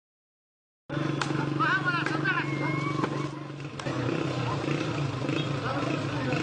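Sound cuts in suddenly about a second in: voices with short high rising-and-falling cries over a steady low hum.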